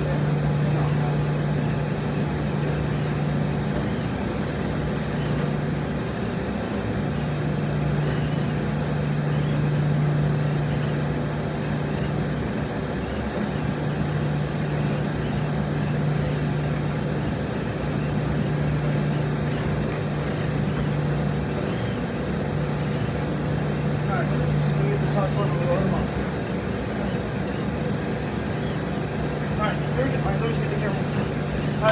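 Steady low hum of laundromat machines running, with one strong low tone that dips out briefly every four or five seconds.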